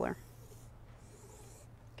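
Faint scratching of a silver Sharpie marker drawn along a ruler on minky plush fabric.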